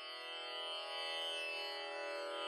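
Instrumental intro music: a sustained drone of many steady overtones, Indian classical in character, swelling slowly.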